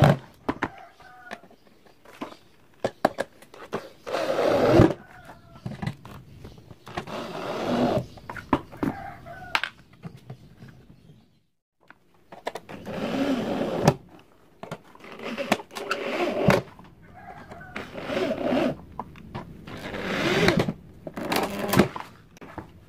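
Electric drill-driver driving screws into the back cover of a subwoofer box: several bursts of motor whine that rise and fall in pitch, with clicks and knocks from handling the screws and panel between them.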